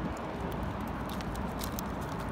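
Steady road rumble of a Hover-1 sit-down electric scooter rolling over pavement, with a few faint clicks.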